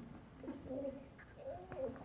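A small child's soft voice, two brief murmured sounds: one about half a second in and one near the end.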